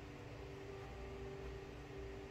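Faint background music of soft held notes that change about every second, over a steady hiss and low hum.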